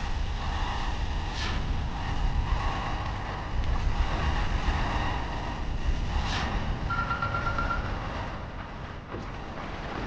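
Cartoon energy-beam sound effect: a steady low rushing roar, with a couple of whooshes and a brief rapid pulsing tone about seven seconds in, easing off slightly near the end.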